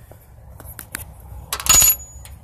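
A few light handling clicks, then a sharp metallic clink near the end that rings briefly with a high, thin tone: a small metal object set down on a hard surface.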